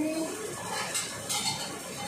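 A few light clinks and scrapes of a kitchen utensil against dishware, about a second in and again shortly after.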